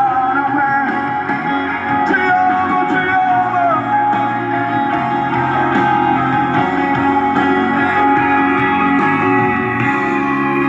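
A song with guitar and singing, played loud through a car-mounted loudspeaker sound system.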